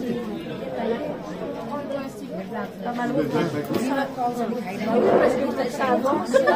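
Several people talking at once: overlapping chatter of voices, men's and women's.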